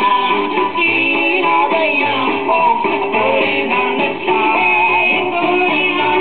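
A 78 rpm record playing on a BSR UA8 Monarch record changer: a song with instruments, running on without a break.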